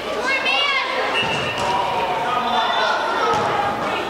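Indoor soccer game in a large echoing hall: players and spectators calling out, with one high shout about half a second in and the thuds of the ball being kicked on the turf.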